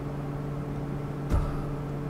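Steady low hum inside a parked car's cabin, several even tones held throughout, with one short soft thump a little over a second in.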